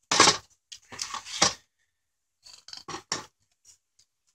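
Handling noise from a Holley 4150 carburetor being lifted, turned around and set back down on a cardboard-covered workbench: a few short scrapes and knocks. The loudest comes right at the start, with more about a second in and about three seconds in.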